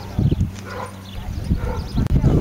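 A dog barking several times.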